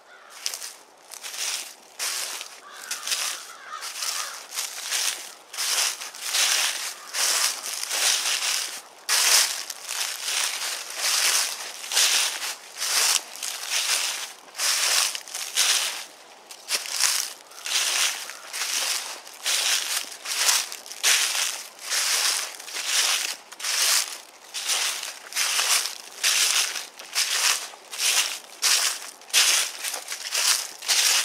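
Footsteps crunching through dry fallen leaves on a woodland trail, an even walking pace of about two steps a second, getting louder after the first couple of seconds.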